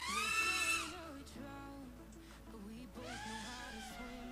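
Quiet background music, with a long rising-then-held melodic note at the start and another arching note about three seconds in.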